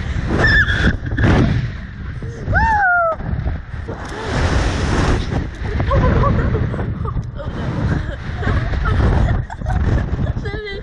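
Wind rushing over the ride-mounted camera's microphone as the reverse-bungee capsule swings through the air, a heavy rumble throughout. Over it the two girls shriek and laugh, with one long falling squeal about two and a half seconds in.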